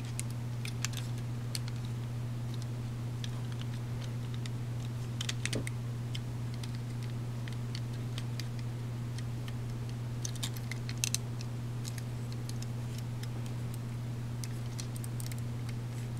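Scattered small clicks and taps of hard plastic parts on a Master Grade Ex-S Gundam model kit as its leg joints are turned and snapped into place by hand. The clicks cluster about five seconds in and again around ten to eleven seconds, over a steady low hum.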